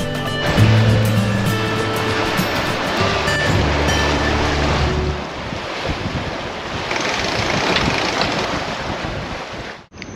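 Rushing water and waves along a sailing catamaran's hull, with wind on the microphone. Background music with steady low notes plays over it for about the first half, then stops, leaving the water rush, which cuts off suddenly just before the end.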